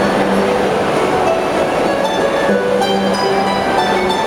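Two harps playing together, plucked notes and chords ringing on over one another, over a steady bed of background noise in a large, echoing atrium.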